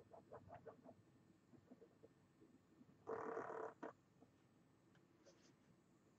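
Near silence with a few faint, quick strokes of a fine-tip ink pen on paper in the first second. A little after three seconds in comes a louder, brief noise lasting just over half a second, ending in a click.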